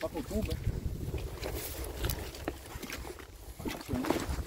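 Wind rumbling on the microphone at the lakeside, with a few short knocks and rustles as the carp sling is carried over the bank stones to the water.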